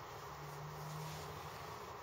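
Quiet room noise with a faint steady low hum lasting about a second, in a pause between speech.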